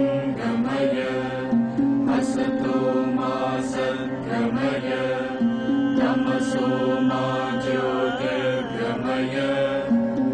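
Devotional chant sung over a steady sustained drone, the voice holding long notes and stepping between pitches, with an ornamented wavering turn about eight seconds in.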